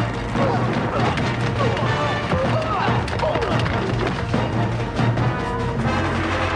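Film score music with a sustained low note, under scattered sharp hits and brief cry-like sounds with gliding pitch in the first half.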